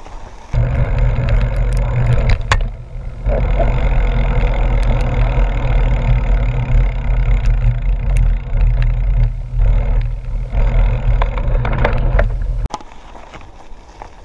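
Heavy wind rumble on an action camera's microphone while riding a mountain bike down a dirt road, with scattered clicks and rattles from the bike and the gravel. It starts abruptly about half a second in and cuts off about a second before the end.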